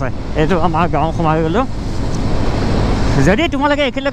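Wind rushing over the microphone and the low drone of a motorcycle on the move, with a man talking over it. The voice drops out for about a second and a half in the middle, leaving only the wind and road rush, then comes back.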